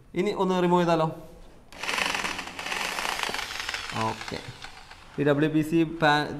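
Electric drill driving a screw into a WPC (wood-plastic composite) board, a noisy whir lasting about two seconds in the middle, with voices before and after.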